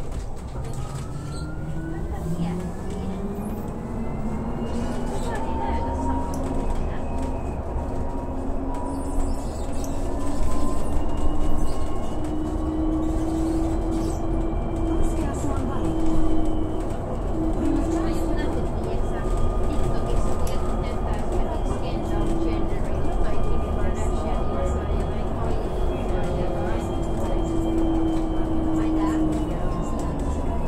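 Cabin ride noise of a moving electric-drive passenger vehicle: a drive-motor whine rises in pitch over the first few seconds as it accelerates, then holds nearly steady over a continuous low rumble of wheels on the road.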